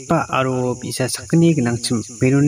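Speech: a voice speaking in short phrases, over a steady high-pitched hiss.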